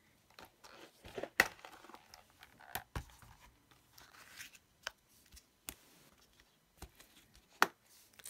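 Hands handling cardstock and a red rubber stamp on a craft table and stamping platform: scattered light rustles and taps, with two sharp clicks, one about a second and a half in and one near the end.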